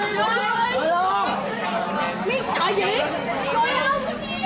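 Several people talking at once: close, overlapping chatter in a room.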